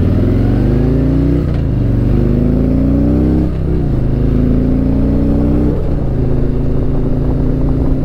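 2019 Harley-Davidson Electra Glide Standard's Milwaukee-Eight 107 V-twin accelerating through the gears. The pitch rises and drops back with each of three upshifts, about two seconds apart, then holds nearly steady near the end.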